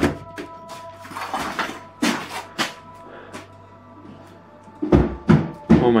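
Eerie background music of steady held tones, with scattered short knocks and a few louder thumps about five seconds in.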